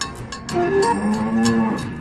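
A cow mooing: one long low moo starting about a second in, over the song's light rhythmic backing music.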